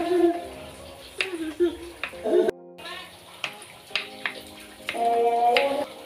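Kitchen knife slicing shallots on a wooden cutting board: a scatter of short, sharp taps of the blade against the board, over background music.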